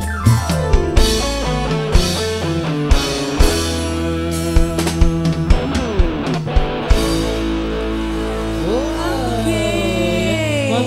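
Live dangdut band playing with drum kit, electric guitars and keyboard, and a woman singing. The drum beat stops about seven seconds in, leaving a held chord with sliding notes.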